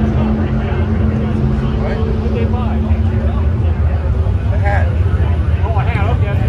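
A loud, steady low rumble with indistinct voices over it, muffled by fabric over the microphone.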